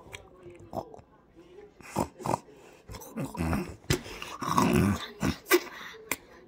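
A child making wordless vocal noises close to the microphone, loudest about four to five seconds in, with a few sharp clicks in between.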